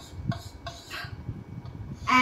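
Chalk on a small chalkboard, faintly tapping and scraping in a few short strokes while a plus sign and a letter are written.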